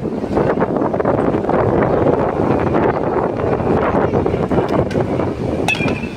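Wind buffeting the microphone, a steady rough rumble, with a single sharp knock near the end.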